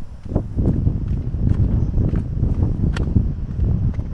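Footsteps on stone steps, a few sharp scuffs at irregular spacing, over a steady low rumble of wind buffeting the microphone.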